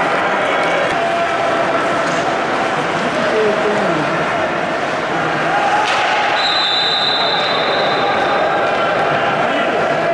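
Open rink sound of a bandy game: players' voices calling across the ice over a steady din. About six seconds in, a referee's whistle gives one steady blast of about a second and a half.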